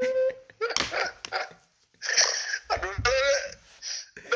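A man laughing heartily in several short stretches, with bits of speech between.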